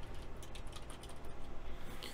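Typing on a computer keyboard: a quick, irregular run of key clicks as a word is deleted and retyped.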